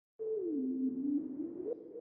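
Electronic tone of an intro logo jingle that slides down in pitch, holds low, then slides back up near the end.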